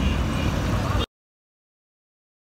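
Low outdoor background rumble that cuts off abruptly about a second in, leaving silence.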